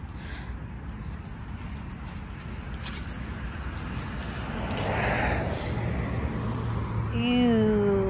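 Outdoor background noise: a steady low rumble, with a swell of noise that rises and fades about five seconds in, like a vehicle passing. A woman's voice starts near the end.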